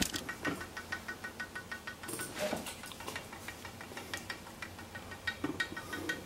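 Wooden woodpecker-toy sleeve with a spring and screw working its way down a wooden dowel pole, clicking rapidly and evenly as it catches by friction and drops by impact, over and over.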